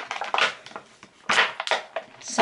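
Crinkling and rustling of product packaging being handled, in about four short, sharp bursts.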